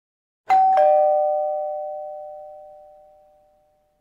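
Two-tone ding-dong doorbell chime: a higher note, then a lower one a quarter second later, both ringing on and fading away over about three seconds.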